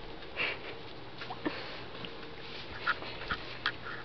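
Mother cat sniffing and licking her kitten as she grooms it: a short sniff about half a second in, then a string of small, quick clicks in the second half.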